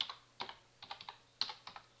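Typing on a computer keyboard: a run of quiet, separate key clicks at an uneven pace, several a second.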